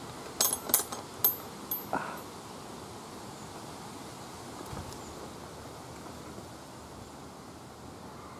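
Four sharp clicks close together in the first two seconds, then a steady outdoor background hiss.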